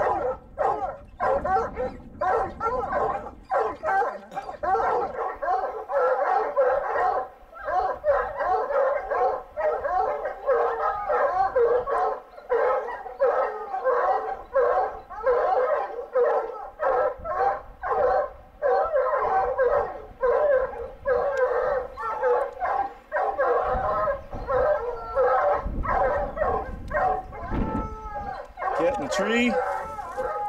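A pack of hunting hounds baying and barking without a break, many voices overlapping, at a mountain lion they have treed: the steady bay that tells the houndsmen the lion is up a tree.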